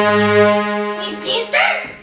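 Song playback: a chord held on steady tones, then from about a second in, swooping scat-singing phrases that rise and fall.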